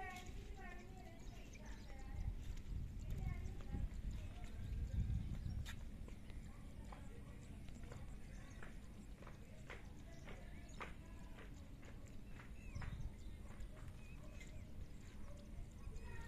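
Faint outdoor ambience: a low wind rumble on the microphone that swells a few seconds in, with scattered light clicks and faint distant voices.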